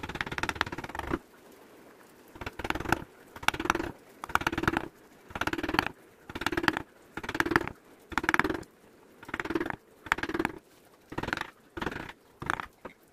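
Hand-pushed carving gouge cutting small grooves into teak: a longer cut at the start, then a run of short scraping cuts of about half a second each, a little more than one per second.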